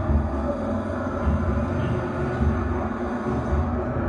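A low, steady rumbling drone with an uneven pulsing in the deep bass, the kind of dark ambient soundtrack used for Butoh dance.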